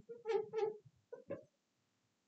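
Felt-tip marker squeaking on a glass lightboard in several short strokes as letters are written, stopping about a second and a half in.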